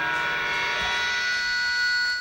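Electric guitar amplifier left ringing at the end of a punk song: a steady, high, sustained drone of feedback tones with no drums.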